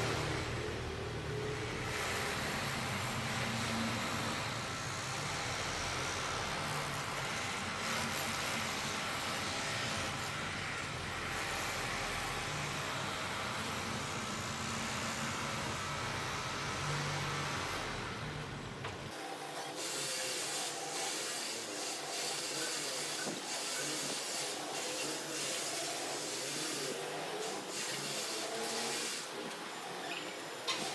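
A minivan's engine running at low speed during slow parking manoeuvres, heard as a steady low rumble under outdoor hiss. About two-thirds of the way through, the rumble cuts off abruptly, leaving a thinner hiss with light ticking.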